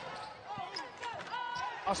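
Basketball game play on a hardwood court: a ball bouncing as it is dribbled and short, high sneaker squeaks about halfway through.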